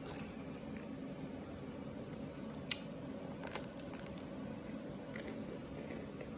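A person chewing starch with the mouth closed: soft squishing with a few crisp clicks and crunches, the sharpest a little under halfway through.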